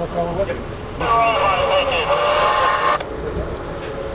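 An indistinct voice comes through a small loudspeaker for about two seconds, starting and stopping abruptly, over the steady rumble of the moving passenger coach.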